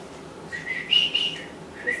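Short high-pitched whistle-like tones: a brief one, then a louder, higher one about a second in, and a lower one again near the end.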